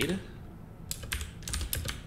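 Computer keyboard keys clicking in a quick run of keystrokes, mostly in the second half.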